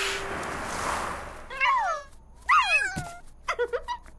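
A soft rushing whoosh for the first second and a half, then three short cat-like calls from cartoon pets, the first two sliding down in pitch.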